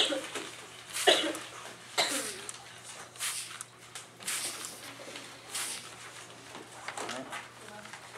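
Trigger spray bottle set to a fine mist, spritzing water onto a crumpled paper sheet in a series of short hissing sprays, about one a second.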